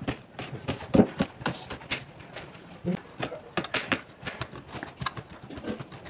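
Kitchen knife chopping a red onion on a cutting board: uneven knocks of the blade on the board, a few a second, the loudest about a second in.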